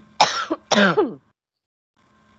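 A person coughing twice to clear the throat: two short, sharp coughs in quick succession within the first second.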